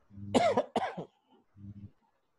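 A person coughing twice in quick succession, the two coughs about half a second apart within the first second.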